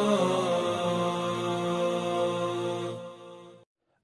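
Television program bumper music: a wordless, low-pitched vocal chant with long held notes that bend slowly, fading out about three seconds in.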